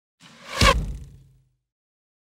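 Logo sting sound effect: a short whoosh that swells to a deep hit about half a second in, then fades away within a second.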